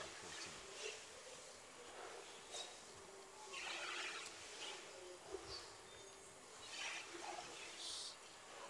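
Badminton doubles rally heard faintly: intermittent racket strikes on the shuttlecock and squeaks of shoes on the court over low hall noise, with a sharper hit about five and a half seconds in.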